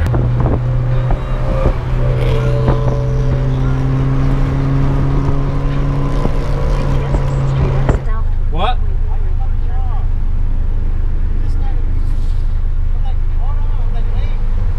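Honda B20B four-cylinder with an aftermarket Vibrant muffler, heard from inside the cabin, running with a steady drone under way. About eight seconds in the drone drops away as the car slows.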